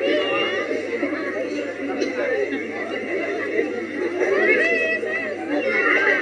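Several voices talking over one another, with a few high-pitched voices rising and falling among them: chatter of people at an outdoor stage.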